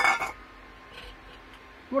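One short, bright clink right at the start, with a brief ringing tone: a steel bowl knocking against the stainless soup pot as the fish maw is tipped in. Then quiet room tone with a low hum.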